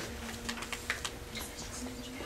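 Typing on a laptop keyboard: a run of light, irregular clicks, about four or five a second, over a faint steady room hum.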